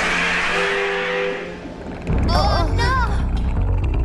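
Cartoon magic sound effects for a villain's purple smoke puff. A loud hissing whoosh fades away, then a deep rumble starts abruptly about two seconds in, with two short wavering, warbling sounds over it.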